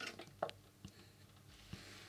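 A few faint clicks and small mouth noises as a saxophone mouthpiece is taken into the mouth, with a soft breath near the end. No note is played.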